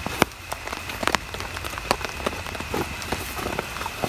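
Rain falling, with irregular sharp ticks of drops striking nearby surfaces.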